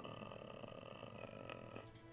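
Low room tone with a faint background hiss, and two faint short clicks about a second and a half in.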